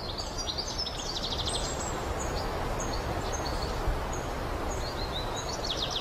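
Birds chirping over a steady outdoor background hiss, with a rapid trill about a second in and another near the end.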